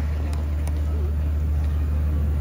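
Steady low rumble from a rock concert's stage sound between songs, with a couple of scattered claps in the first second.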